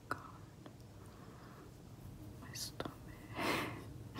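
Soft, breathy human sounds close to the microphone: whispered breaths or exhales, the strongest about three and a half seconds in, with a sharp click at the start and another small click shortly before it.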